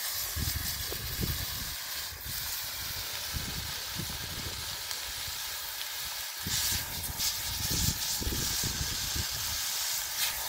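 Marinated chicken pieces sizzling in hot oil in a skillet over a wood fire, a steady hiss that grows louder about six and a half seconds in as another piece is laid in.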